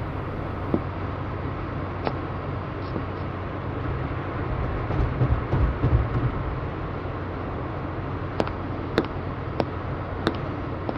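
Street ambience: a steady hum of traffic, with a low swell as a vehicle passes about halfway through, and a few short sharp clicks near the start and toward the end.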